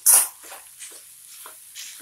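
A brief loud burst right at the start, then a few light scrapes and knocks of a spatula against a frying pan as drained, boiled vermicelli is worked into the cooked vegetables.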